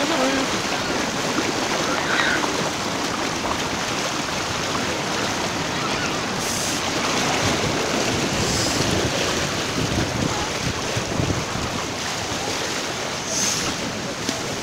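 Heavy-swell surf and seawater rushing across a sandy beach: a steady, continuous wash of breaking, foaming water.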